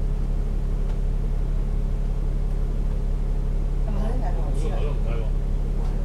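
Double-decker bus's diesel engine idling steadily while stopped, heard from on board. A voice is heard briefly about four to five seconds in.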